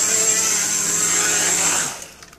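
Small electric tricopter's motors and propellers running with a steady high whine, then winding down and cutting off near the end as it sets down on the ground.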